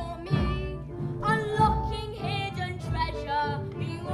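A child singing a show song with live band accompaniment.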